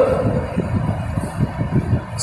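A low, uneven rumbling noise, without speech.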